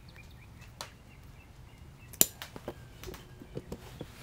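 Scattered light clicks and knocks over faint background, with one sharp click about halfway through.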